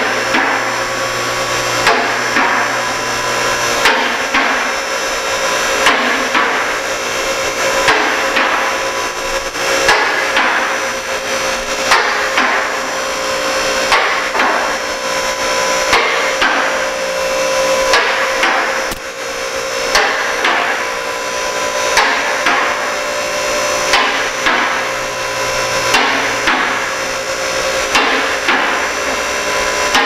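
Titan 9K Elite two-post car lift raising a vehicle: its 220-volt aluminium electric-hydraulic power unit runs steadily, while the safety locks clack over the lock racks in the towers about every two seconds as the carriages climb.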